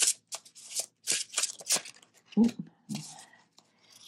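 A tarot deck being shuffled by hand: a quick run of crisp card slaps, about five a second, for roughly two seconds, then a short "ooh" from a woman.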